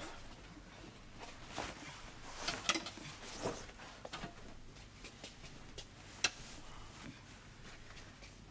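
Faint rustling of clothing as a leather jacket is pulled off and another jacket put on, with scattered soft clicks and one sharper click about six seconds in.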